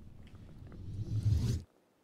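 Intro whoosh sound effect: a deep rumbling swell with a hissing sweep above it, growing louder and then cutting off suddenly about a second and a half in.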